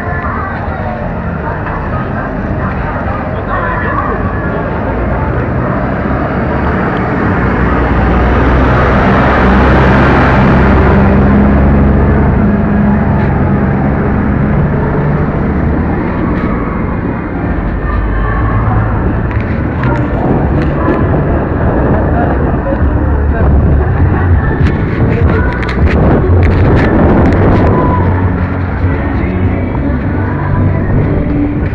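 Loud, rumbling outdoor street noise on a small spy camera's microphone as it is carried through a town square, with indistinct voices in the background. The rumble swells about a third of the way in and again near the end.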